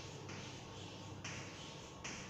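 Chalk scraping on a chalkboard while writing, in several separate strokes that start and stop abruptly, each half a second to a second long. A steady low hum runs underneath.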